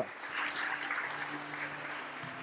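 Congregation applauding, an even clapping across the whole pause, with faint steady low tones held underneath.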